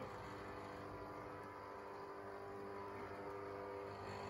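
MiScreen thermal screen maker running while its thermal print head burns the image into the heat-sensitive coated mesh: a faint, steady machine hum made of several steady tones.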